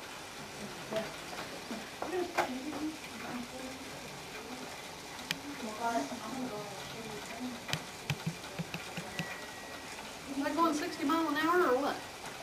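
Faint voices talking in a room over a steady low hiss, with a few scattered clicks; the voices grow clearer near the end.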